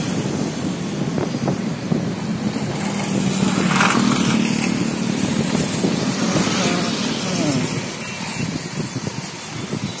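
Road traffic: a steady low engine hum with motorcycles and cars passing, and one louder pass about four seconds in.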